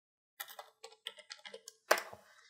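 Typing on a computer keyboard: a quick, uneven run of keystrokes starting about half a second in, with one louder keystroke near the end.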